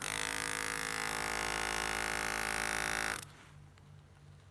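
Small brushed DC motor of a hand-held PCB mini drill switched on by its push button, running at a steady speed with a hum and a steady high whine, then stopping suddenly after about three seconds. The motor is fed by an LM358 op-amp PWM speed controller working at 1 to 3 kHz.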